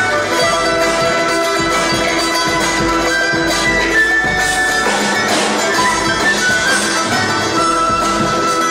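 Live Andean folk instrumental: a quena, an end-blown wooden flute, carries the melody in sustained notes over a string and percussion accompaniment.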